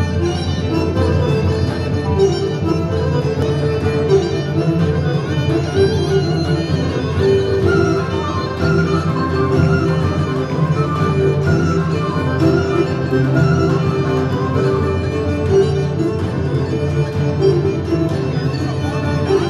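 Live folk band playing Thracian dance music at a steady loudness, with a melody line running over the accompaniment.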